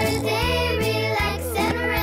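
A children's song: voices singing over a bright backing track with a steady bass line.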